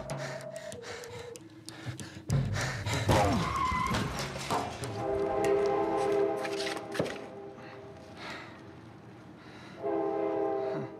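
Film soundtrack mixing score and sound effects: scattered clicks and knocks, then a sustained chord of several steady held tones from about five seconds in that fades out after a couple of seconds.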